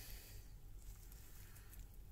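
Faint rustling of damp compost being lifted and handled in a gloved hand, over low background noise.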